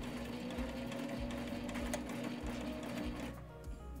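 Sailrite Ultrafeed walking-foot sewing machine running steadily, stitching a backstitch to lock the end of a seam, and stopping a little over three seconds in.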